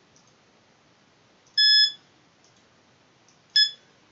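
Two short, high-pitched electronic beeps from the desktop software's volume control as it is muted and then unmuted. The first comes about a second and a half in and lasts under half a second; the second, shorter one comes near the end.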